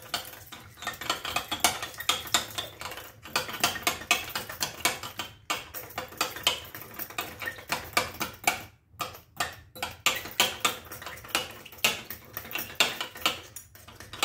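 A small metal whisk beating raw eggs in a glass bowl, clicking quickly and steadily against the glass, with brief pauses about five and nine seconds in.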